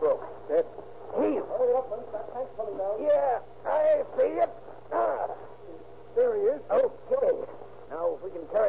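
Voices speaking in an old radio drama recording, in short quick phrases, over a steady low hum.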